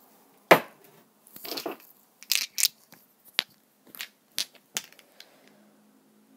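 A plate smashing: one sharp crash about half a second in, followed by a shorter rattle and a scatter of small clinks as the pieces come to rest.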